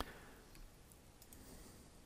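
A single sharp computer mouse click right at the start, then near silence with faint room tone.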